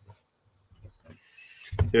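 A man's pause in speech: near silence with faint small noises, then a soft in-breath about a second and a half in, and his speech starting again just before the end.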